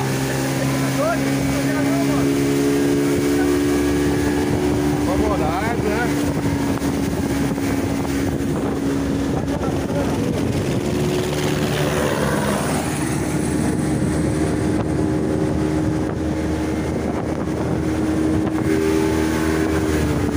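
A motorboat's engine running steadily with a constant hum, over a rush of water and wind on the microphone.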